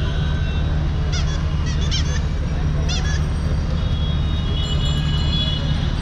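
Busy city street traffic with a steady low rumble. Short, high, wavering horn toots sound three times in the first three seconds or so.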